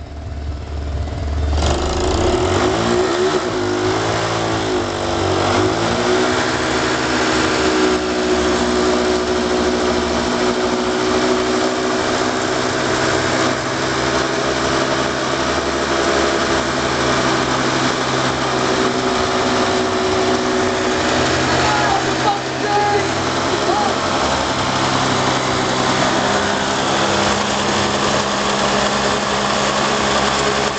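Pocket bike's small engine revved hard and held at high revs during a burnout, its rear wheel spinning in dirt. The pitch climbs over the first few seconds, then stays high and fairly steady, with a brief dip a little past the middle.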